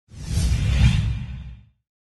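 A whoosh sound effect with a deep rumble under it. It swells for about a second and fades out well before two seconds.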